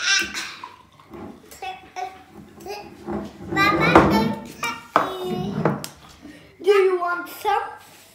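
Young children talking and babbling in short bursts, not clear enough to make out as words.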